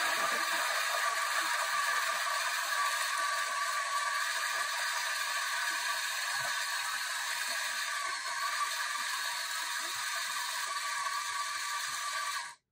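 Breville Barista Express BES870's built-in conical burr grinder running, a steady whir as it grinds coffee beans into the portafilter.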